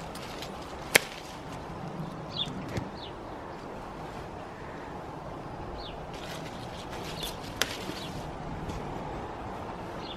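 Two sharp snips of hand pruning secateurs cutting grapevine shoots: one about a second in, the other several seconds later.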